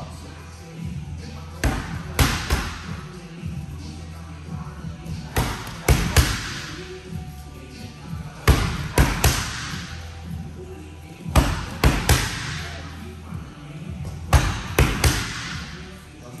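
Punches and kicks smacking focus mitts in quick combinations of three strikes, one combination about every three seconds, each smack ringing briefly in the room.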